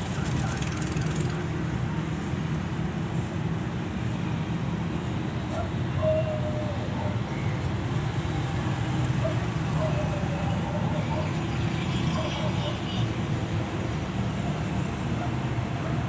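Steady low rumble of background noise, with faint distant voices now and then.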